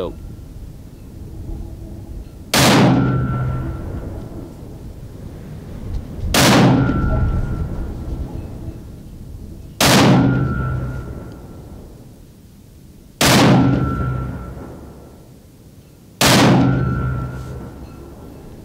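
Five rifle shots from a Stevens 200 bolt-action in .308 Winchester, fired about three to four seconds apart. Each sharp report trails off over a couple of seconds and is followed by a brief high steady tone.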